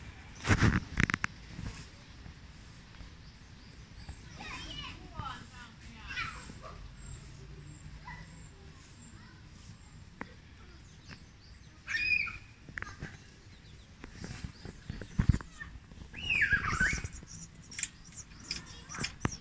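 Background chatter of people and children, with a few louder short cries standing out over it.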